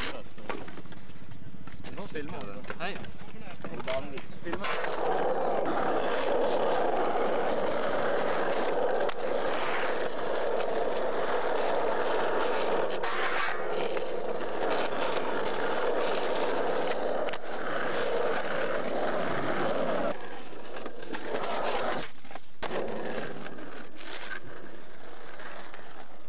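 Skateboard wheels rolling on asphalt: a steady rolling rumble starts about five seconds in and drops away about twenty seconds in.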